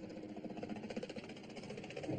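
A light helicopter flying in low, its rotor blades giving a rapid, even chop over the engine.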